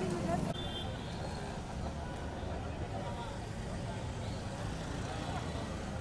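Street ambience: several people talking indistinctly over the steady rumble of road traffic.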